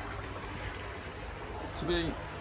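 Water churning and splashing in a fish quarantine tank, stirred by pumped water returning through a wide pipe and by aeration: a steady rushing with a low hum underneath.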